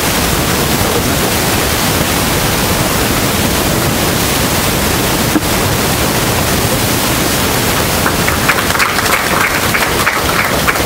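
Loud, steady hiss across the whole range, like static on the audio track, with one brief dip about five seconds in.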